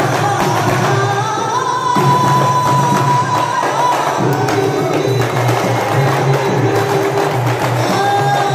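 Marawis ensemble playing: small hand frame drums, a large hajir bass drum, a goblet drum and a cymbal beating a dense, driving rhythm under a male lead singer's sholawat vocal. The singer holds one long note from about a second and a half in, for about two seconds.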